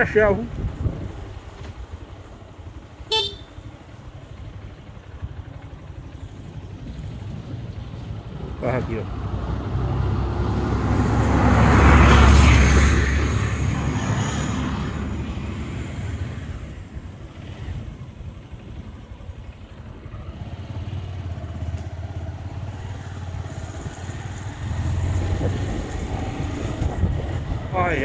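Motorcycle engine running with wind rushing past on a dirt road, a brief horn toot about three seconds in. A tanker truck's engine rumble swells to a peak about twelve seconds in as it passes, then fades away.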